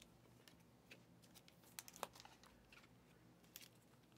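Near silence with faint crinkling and a few light clicks, about two seconds in, of trading cards being handled.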